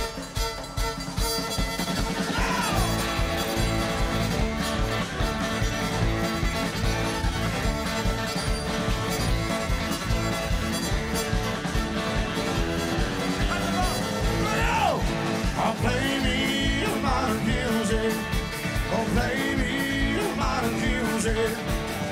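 Live country-rock band playing an up-tempo instrumental passage, with a fiddle bowing the lead over electric guitar, bass and a steady drum beat.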